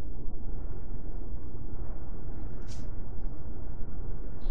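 Steady low background rumble with no speech, with a few faint brief ticks and one short soft hiss near the middle.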